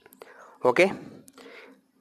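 A pen scratching briefly on paper as an equals sign is written, after a couple of light clicks and a spoken 'okay'.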